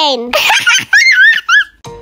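Young children's high-pitched voices, squealing and giggling in several short bursts that rise and fall in pitch.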